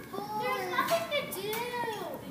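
Children's voices speaking indistinctly, several overlapping at times.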